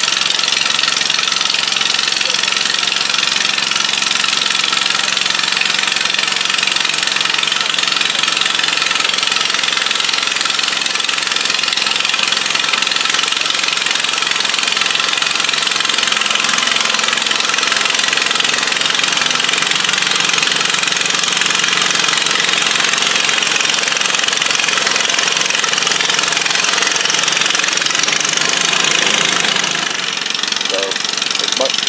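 Garden pulling tractor's engine running hard under load as it drags the weight sled down the track, a loud, steady engine sound with no let-up.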